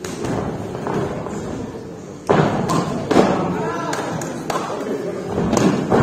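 Kicks and punches landing in a kickboxing bout: a run of sharp thuds starting about two seconds in, over people shouting around the ring.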